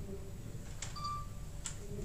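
Steady low room hum with two sharp clicks, one a little under a second in and one near the end, and a short high beep between them.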